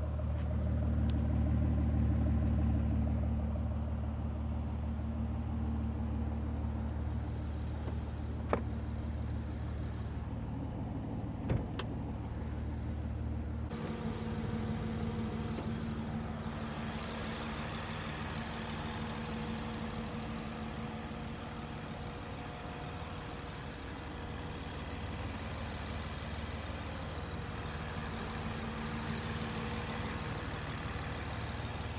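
Aston Martin V12 Vantage S's naturally aspirated 6.0-litre V12 idling steadily, with a deep, even exhaust note. About fourteen seconds in, the low note drops back and a lighter whirr and hiss from the engine bay takes over. Two short clicks come before the change.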